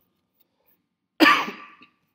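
A person coughs once, loudly and suddenly, a little over a second in, after near silence.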